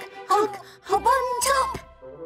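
A cartoon animal character's voice making whining, straining moans: a short one near the start and a longer one that rises and falls about halfway through, over soft background music.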